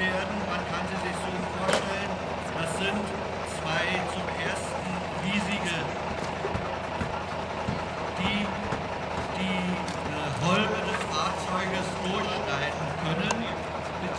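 A steady engine hum runs throughout under the scattered voices of onlookers.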